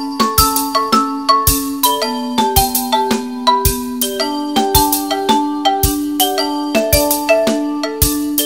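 Percussion quartet playing: mallet instruments ring out sustained, bell-like pitched notes in a moving line over a steady pulse of short low strokes, about two a second.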